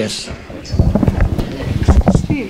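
Handling noise from a handheld microphone as it is lowered and passed on: a run of low thumps and rumbling knocks, starting a little under a second in.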